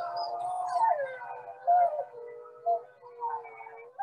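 A pack of wolves howling together: several overlapping drawn-out calls gliding up and down in pitch, fading toward the end.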